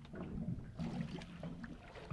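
Low water and boat noise: water lapping against a boat hull, with a few light knocks.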